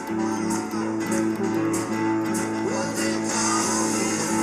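Semi-hollow electric guitar playing a blues boogie riff in A: the open A string keeps sounding under a repeating two-chord pattern in a steady rhythm.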